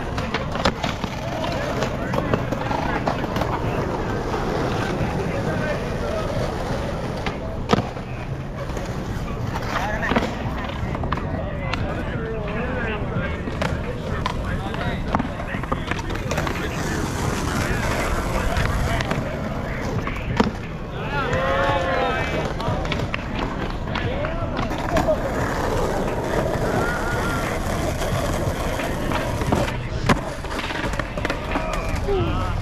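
Skateboard wheels rolling on rough asphalt, with a few sharp clacks of tail pops and board landings, the loudest about eight seconds in. Voices of onlookers chatter throughout.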